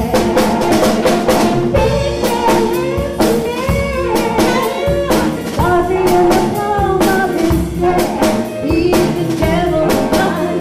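Live band playing a bluesy jazz number: drum kit, electric bass, keyboard and saxophone, with a woman singing over them.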